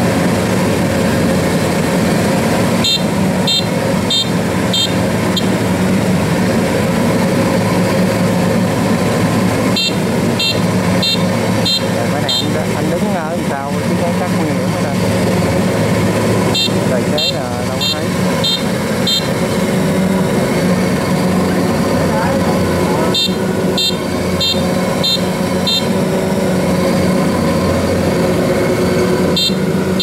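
Kubota DC-93 combine harvester's diesel engine running steadily under load as the machine crawls through deep, soft paddy mud. An electronic beeper on the machine sounds over it in runs of about five short high beeps, about two a second, repeating every six or seven seconds.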